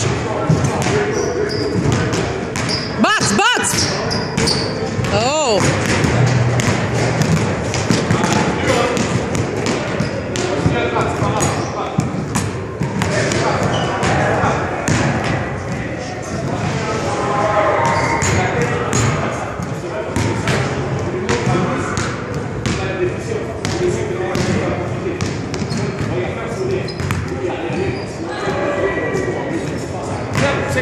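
Basketballs bouncing again and again on a hardwood gym floor, with a couple of sharp sneaker squeaks a few seconds in, under a murmur of voices in a large echoing hall.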